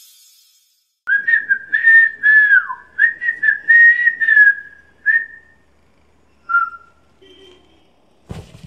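A person whistling a tune of several notes, stepping and gliding in pitch, for about four seconds, then one more short whistled note.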